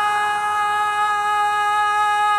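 Male Shia latmiya reciter (radood) holding one long sung note at a steady pitch, without the wavering ornaments of the line before it.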